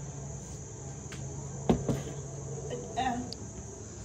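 Insects chirring in a steady, unbroken high-pitched drone, like crickets in summer, with a single sharp knock about halfway through and a brief voice near the end.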